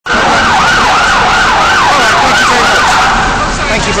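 An emergency vehicle siren in a fast yelp: a falling sweep repeated about three times a second, fading out near the end.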